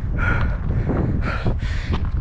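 A runner breathing hard after an uphill run: two loud breaths, one just after the start and a longer one past the middle, over a steady rumble of wind on the microphone.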